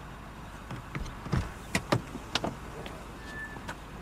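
Clicks and knocks inside a car as a car door is unlatched and opened and someone moves out of the seat, with one short beep about three seconds in.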